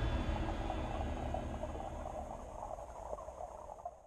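A low rumble with a soft, flickering hiss above it, fading steadily away to silence: the tail of the soundtrack dying out.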